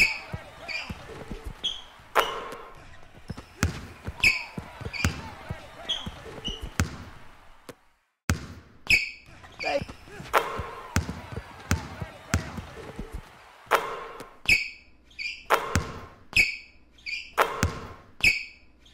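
Basketball dribbling on a hardwood court, a run of sharp bounces, with short high sneaker squeaks and voices underneath. The sound breaks off briefly about eight seconds in, then the bouncing and squeaking resume.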